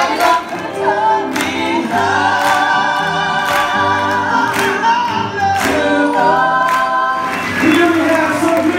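Gospel vocal group singing together in harmony through microphones. About two seconds in, the voices settle into long held chords with vibrato.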